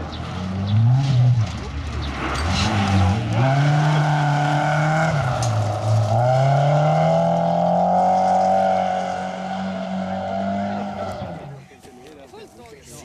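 Volvo rally car's engine revving hard as it slides through a gravel corner, with gravel spraying, then accelerating away: the revs rise and fall twice with gear changes in the first half, then climb steadily for several seconds before the car fades out shortly before the end.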